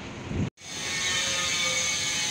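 Outdoor road noise: a low rumble of traffic, cut off abruptly about half a second in, then a steady vehicle-like hum with a faint constant whine.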